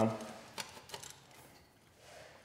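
A few faint, light metallic clicks as a titanium cat-eliminator pipe is slid onto the exhaust header.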